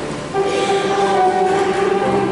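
Organ music: a sustained chord that comes in about a third of a second in after a brief dip and is held steady.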